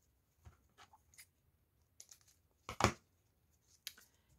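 Faint handling clicks, then a short sharp snip about three quarters of the way in: scissors cutting through the wire stem of a foamiran flower.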